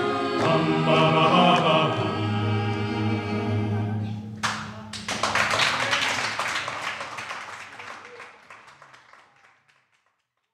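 An a cappella choir singing, holding its final chord, then applause breaking out about halfway through and fading away to silence near the end.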